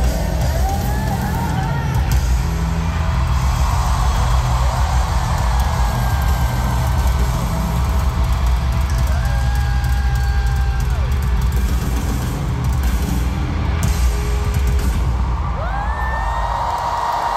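Live band music in a large arena, recorded from the stands: a heavy, steady bass with long held notes above it. A pitched note glides up near the end.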